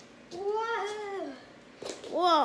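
A child's drawn-out playful 'wheee', held for about a second, its pitch rising slightly and then falling away.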